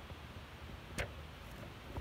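Faint steady background noise with a single sharp click about halfway through.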